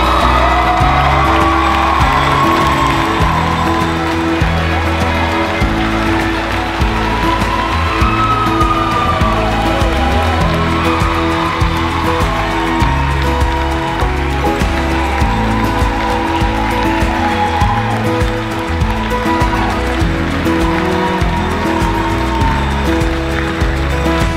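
Background music with a steady bass line and sustained chords, a melody moving above it.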